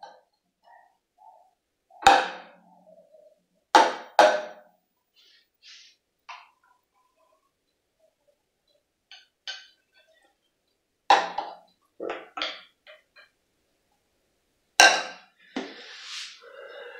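Sharp knocks and clinks of a stainless steel milk pitcher and glass cup against a granite counter, in pairs and clusters, with fainter sounds of steamed milk being poured into a glass of espresso in the quieter middle stretch.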